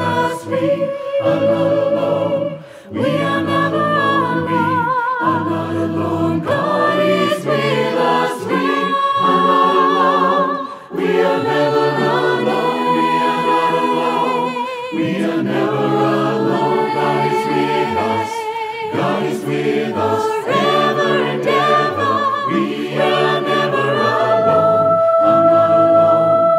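A choir singing a worship song in harmony, with vibrato on the held notes. A long, steady note is held near the end.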